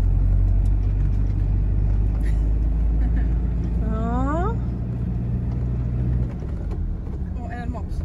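A motorhome's engine and road noise heard from inside the cab while driving slowly through town, a steady low hum that drops off about six seconds in. About four seconds in there is a short rising vocal sound.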